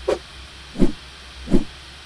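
Three short, low hits about three-quarters of a second apart, each dropping slightly in pitch, over a faint steady hiss: sound effects of an animated logo ident.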